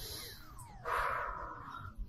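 A woman exhaling hard through pursed lips for about a second, starting just under a second in.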